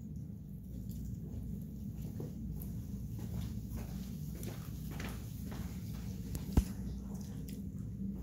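Children biting and chewing corn on the cob: small irregular crunching, smacking clicks over a steady low room hum, with one sharper click about six and a half seconds in.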